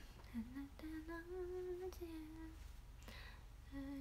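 A young woman humming a slow tune quietly to herself, in held notes that dip and rise, with a short break shortly before the end.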